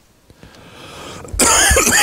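A man coughs into his hand: a soft breath building up, then a loud, harsh cough about one and a half seconds in.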